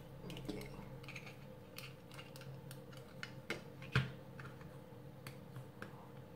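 Plastic action figure being handled and pressed onto its plastic display stand: faint scattered clicks and ticks, with a sharper click about four seconds in.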